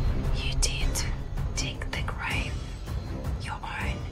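A woman speaking over background music with a low, steady drone.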